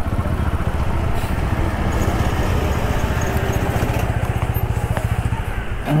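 Motorcycle engine running steadily at low speed, with a fast, even low pulse.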